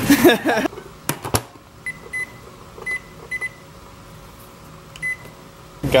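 Checkout barcode scanner beeping: about six short, high single beeps at uneven intervals, after a couple of sharp clicks.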